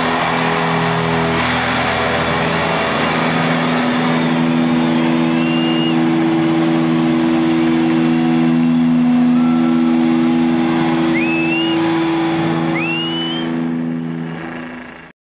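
A rock band's last chord held as a steady low drone at the end of the song, over a stadium crowd cheering. Short rising whistles from the crowd cut through three times in the second half.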